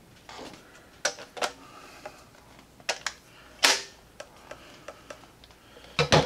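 Scattered sharp plastic clicks and clacks from a 3D-printed folding stock on a Nerf blaster being folded and snapped into its locked position. The loudest clack comes a little past halfway.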